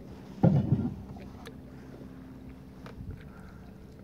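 Kayak paddle working the water: one loud splash about half a second in, then two fainter ones near one and a half and three seconds, over a faint steady low hum.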